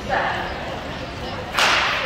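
A sprint starting pistol fires about one and a half seconds in: a single sharp crack that echoes briefly in the indoor arena, starting the 55 m dash.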